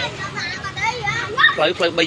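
People's voices talking and calling out over each other, some of them high-pitched.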